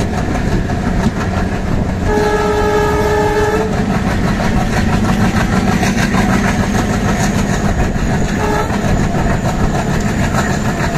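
An Indian Railways WDM3 diesel locomotive and train running along the line, with a steady engine drone and wheel noise on the rails. The locomotive's horn sounds about two seconds in for roughly a second and a half, and gives a short toot near the end.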